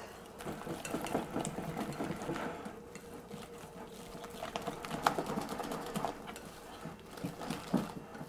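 Wire whisk beating a thick flour-and-egg batter in a glass bowl: a rapid, steady clatter of the wires stirring through the batter and against the glass, worked hard to break up the lumps.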